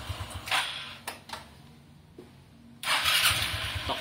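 Suzuki Skywave scooter's four-stroke single, running on a newly fitted carburetor, dies away within the first second. After a couple of short clicks and a quiet spell, the electric starter cranks it near the end and it catches at once and idles.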